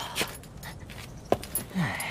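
A person's heavy breathing, with a short falling grunt near the end and a couple of sharp knocks.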